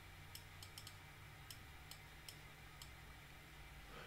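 Faint, irregular clicking of a computer mouse, about ten clicks spread unevenly, over near silence with a low steady room hum.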